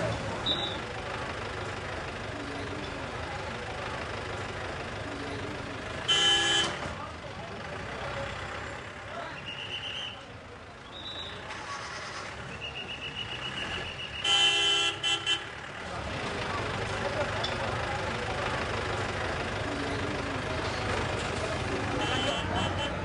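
Busy street traffic with vehicle horns: one short honk about six seconds in and a longer, broken honk about fourteen seconds in, over a steady background of traffic and distant voices.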